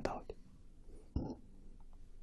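A man's speech ends a phrase, then a pause of faint room tone through a lapel microphone, broken by one brief soft sound, a breath or mouth noise, about a second in.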